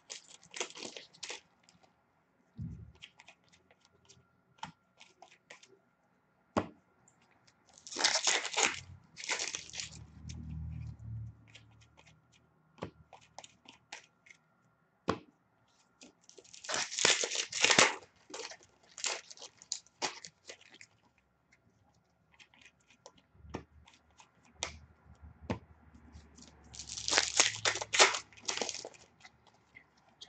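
Upper Deck Series 2 hockey card pack wrappers being torn open, three times about nine seconds apart. Between the tears come light clicks of the cards being handled.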